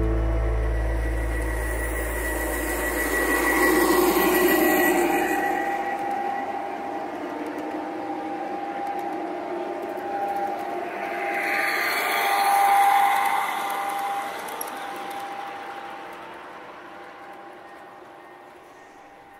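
G-scale model diesel locomotive and train running along garden railroad track: a steady hum with rolling wheel noise that swells about 4 seconds in and again about 12 seconds in, then fades away.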